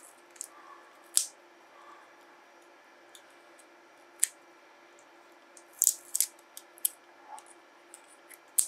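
Pliers tearing spot-welded nickel strip off the terminal of an 18650 lithium-ion cell: sharp metal clicks and snaps, one about a second in, another near four seconds, and a quick run of several between six and seven seconds.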